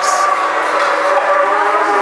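Animatronic Tyrannosaurus rex giving one long, loud recorded roar.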